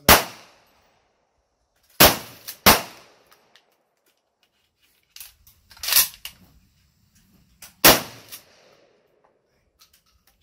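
Mossberg shotgun firing, about five loud shots: one at the start, two less than a second apart about two seconds in, one about six seconds in and one near eight seconds. Softer clicks and knocks are heard between the shots.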